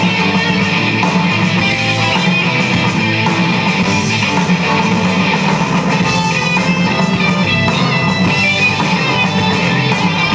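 Live rock band playing an instrumental passage on electric guitars and drum kit, with no singing, at a steady loud level.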